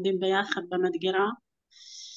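A woman's voice speaking in drawn-out, steady tones that stop about one and a half seconds in, followed near the end by a short, soft hiss.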